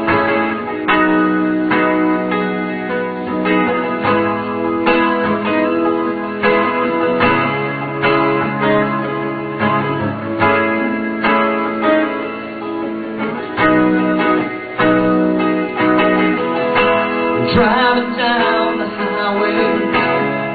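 Live band playing a song's instrumental introduction: sustained chords that change every second or two, over a steady beat.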